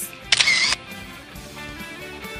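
A camera-shutter sound effect: one short, loud burst about a third of a second in, over soft background music.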